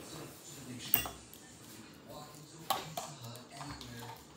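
Sharp clicks of small utensils being handled, one about a second in and another near three seconds, otherwise fairly quiet.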